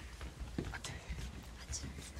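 Faint, indistinct voices murmuring over a steady low rumble, with a few light clicks or knocks.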